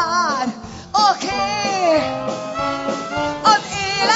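A woman singing live into a handheld microphone: swooping phrases, then a long held note in the middle.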